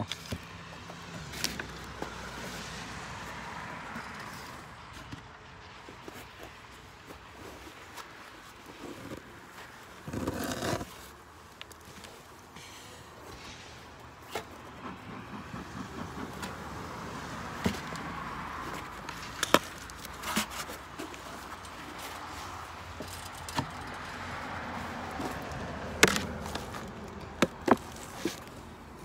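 Wooden beehive boxes and covers being handled and lifted off: scattered sharp knocks and scrapes of wood on wood, with a longer, louder scrape about ten seconds in, over a steady faint background noise.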